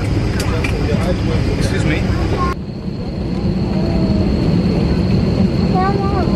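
Airliner cabin on the ground: a steady low rumble of the aircraft's running systems with faint passenger chatter over it. The background changes abruptly about two and a half seconds in.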